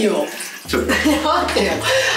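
Water spraying from a handheld shower head onto a bathroom mirror, with voices talking over it.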